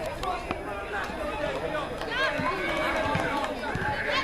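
Several high children's voices shouting and calling at once, overlapping, busiest in the second half.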